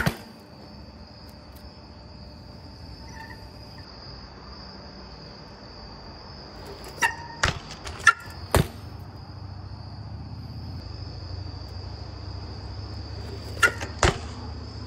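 Steady high-pitched chirring of insects over a low outdoor rumble, with a few sharp clicks about seven to nine seconds in and again near the end.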